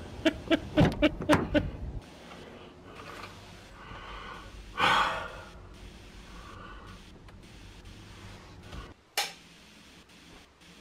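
A person's quick, voiced gasping breaths: about six short gasps in the first two seconds and a louder breathy gasp about five seconds in. A single sharp click comes near the end.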